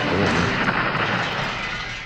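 A cartoon sound effect: a loud, rushing, explosion-like rumble that fades away steadily over about two seconds.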